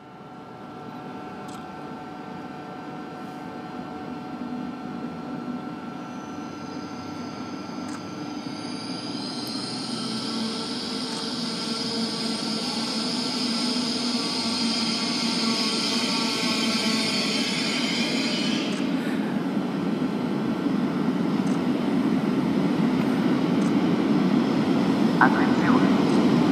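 Electric freight train led by an FS E656 locomotive approaching, its rumble growing steadily louder. A high whine rides over it for several seconds in the middle, and clicking from the wheels comes in near the end.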